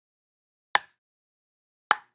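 A ball being hit back and forth with bats: two sharp knocks about a second apart, each with a short ring.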